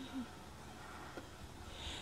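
Quiet background hiss with a brief low hummed voice sound at the very start and a faint tick about a second in.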